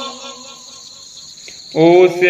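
A brief lull with only a faint high background hiss, then a voice starts chanting loudly near the end.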